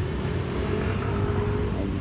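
Street traffic: a motor vehicle's engine drone holding a steady, slightly rising pitch over a low rumble.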